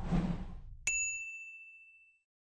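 Logo-reveal sound effect: a short whoosh, then just under a second in a single bright ding that rings and fades away.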